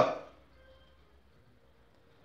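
A man's voice ends a word with a falling pitch just at the start, then near silence.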